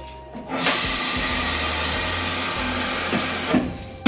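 Kitchen tap running water into a glass coffee carafe, a steady rush that starts about half a second in and shuts off shortly before the end.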